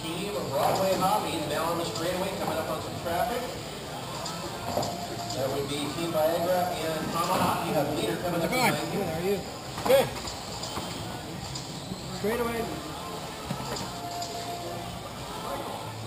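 Indistinct voices of people talking, with a single sharp knock about ten seconds in.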